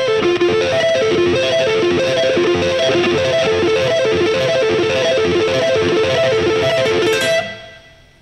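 Stratocaster-style electric guitar playing a four-note F major 7 arpeggio (frets 12 to 15 across the high E, B, G and D strings) with economy picking, the pattern cycling over and over at an even, steady tempo. The playing stops about seven seconds in.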